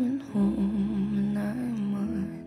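A singer humming a low, wavering melody without words over sustained keyboard chords.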